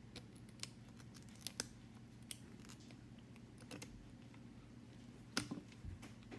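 Faint, scattered clicks and ticks of an X-Acto knife blade prying and chipping cracked rear glass off an iPhone XS Max, slowly and piece by piece, with a louder cluster of clicks near the end.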